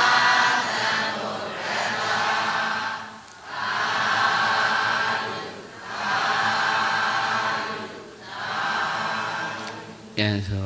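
A group of voices chanting together in unison, in phrases of about two to three seconds with short breaks between them, typical of a Buddhist congregation's responsive chant.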